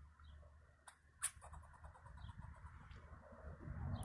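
Fox squirrel giving two short, sharp alarm calls about a second apart, the second louder, over faint hiss: the scolding of a squirrel agitated by a person close to its nest.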